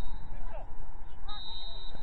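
Outdoor football-pitch sound on the camera's microphone: a low wind rumble with faint distant shouts from players. A steady high referee's whistle comes in late on, signalling full time.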